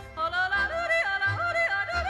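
Background music: a yodel. A single voice starts a moment in and flips sharply between low and high notes, then holds a wavering note, over an instrumental accompaniment with a regular bass beat.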